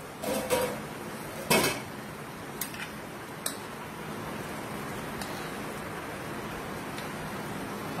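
A few clinks and knocks of a utensil or lid against a non-stick pan, the loudest about a second and a half in. After that comes a steady hiss from the steaming pan of stew cooking on the stove.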